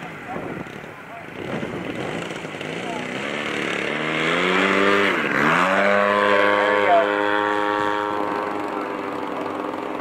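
Radio-controlled model airplane flying overhead, its motor and propeller growing louder over the first few seconds, dipping sharply in pitch and swinging back up about five seconds in, then holding a steady drone.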